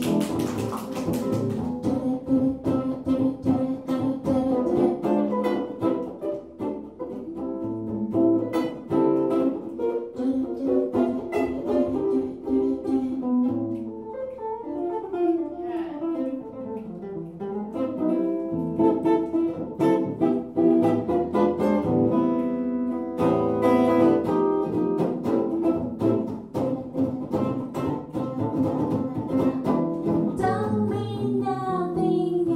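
Archtop hollow-body electric guitar playing an instrumental break in a swing tune, with picked single-note lines and chords, including a run that falls and then climbs back up in the middle.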